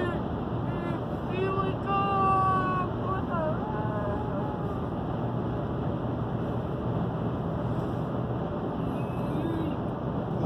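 Steady road and tyre noise inside a moving car's cabin on the highway. A voice is heard briefly between about one and four seconds in, and faintly again near the end.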